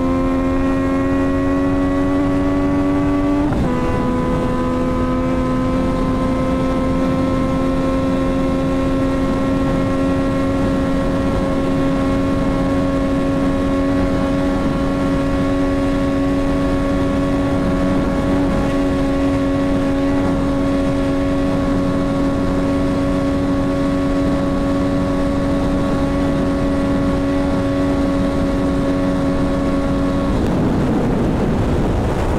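Yamaha MT-09's inline three-cylinder engine with a full exhaust, held at high revs under full throttle: the pitch climbs slowly, drops once at an upshift about three and a half seconds in, then holds as a nearly steady high drone.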